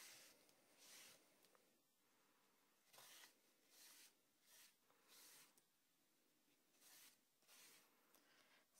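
Faint, short swishes of a paper towel rubbed across embossed foil tape, wiping off excess black acrylic paint, several strokes about a second apart.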